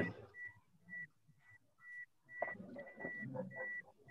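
A student's voice, faint and thin through the video call, answering from about two seconds in. Under it a faint high-pitched tone cuts in and out about twice a second.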